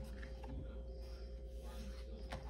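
Faint rustling of paper as a spiral-bound coloring book's page is handled and turned, over a steady low hum.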